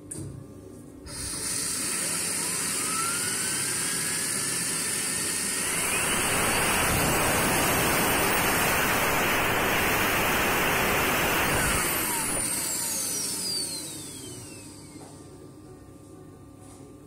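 Turbocharger rotor spinning at high speed on a Schenck high-speed balancing machine during an unbalance measurement. A rush of air and a whine start about a second in, and the whine climbs in pitch as the rotor spins up. The sound holds loud at speed, then the whine falls away as the rotor spins down and fades out near the end.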